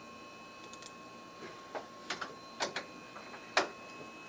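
A pause in the broadcast: a faint steady electronic tone, with about six short, irregular clicks in the second half.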